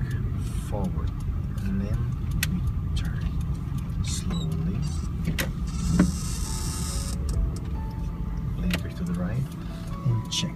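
Inside a Nissan car's cabin: steady engine and road rumble while driving at low speed. Short clicks come through now and then, and a burst of hiss arrives about six seconds in.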